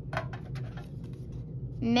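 Trading cards being rummaged through and pulled out of a metal tin: faint rustling and light clicks over a steady low hum. A voice starts near the end.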